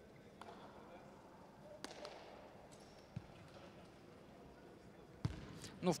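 Faint, quiet sports-hall sound with a handful of short knocks at uneven intervals, typical of a volleyball bouncing on the court floor between rallies. The last and loudest knock comes about a second before the end.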